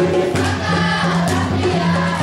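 A group of voices singing together in African troupe style over drums, with a repeating low pitched beat and occasional sharp drum strikes.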